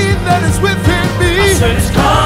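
Live gospel worship music: a male lead vocalist sings gliding, bending vocal runs over the band, with a steady sustained low note underneath.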